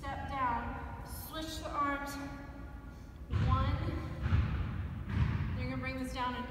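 A voice singing long, gliding held notes from a recorded song. Dull low thuds come in over the middle part.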